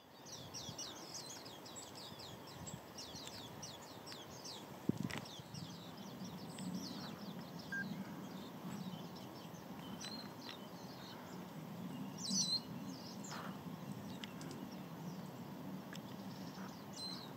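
Wild birds calling: a rapid run of thin, high, down-slurred chirps through the first six seconds, then scattered calls, the loudest about twelve seconds in, over steady low background noise. A single sharp knock about five seconds in.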